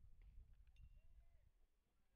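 Near silence: a faint low rumble of outdoor background, with a couple of faint high chirps.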